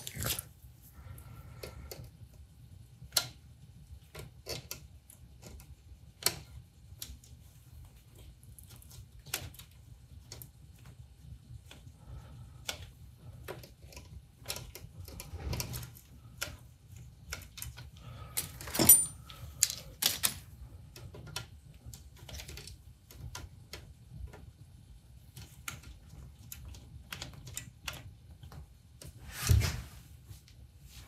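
Scattered small clicks and taps of hand tools and screws on the metal parts of a KitchenAid stand mixer's head as a speed control plate's mounting screws are adjusted, over a low steady hum. The sharpest click comes a little past halfway through.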